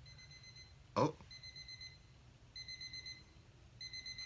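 Electronic alarm clock beeping in short bursts of about four quick beeps, a burst roughly every second and a quarter. A man gives a brief 'oh' about a second in.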